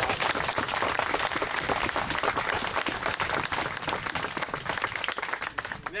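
Small audience applauding, many hand claps running together.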